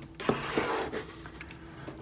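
A plastic action figure is handled and set down among other figures on a tabletop: a short rustle of plastic with a few light clicks in the first second.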